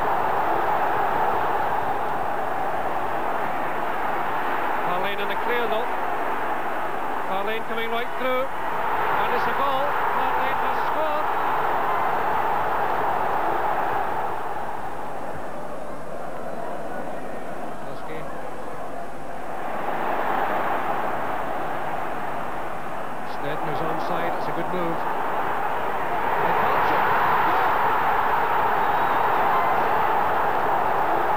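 Large football stadium crowd roaring, the noise rising and falling in waves, with a few louder individual shouts. It drops to a quieter stretch in the middle and swells again near the end.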